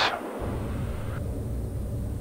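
Steady low rumble of the TBM 910's Pratt & Whitney PT6A turboprop and airframe in the cockpit during the landing rollout, with the deepest part dropping out briefly at the very start.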